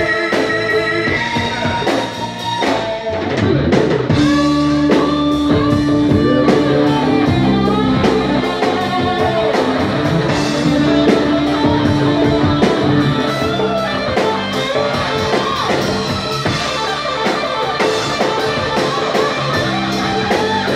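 Live rock band playing an instrumental break of a ballad: electric guitar holding long lead notes over a drum kit.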